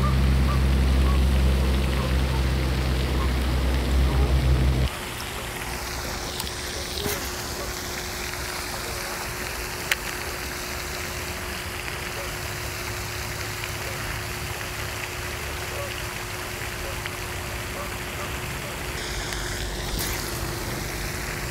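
Steady spray and splash of a pond's aerating fountain, an even hiss with a faint steady hum under it. For about the first five seconds a louder low rumble covers it, then cuts off abruptly, and one sharp click comes near the middle.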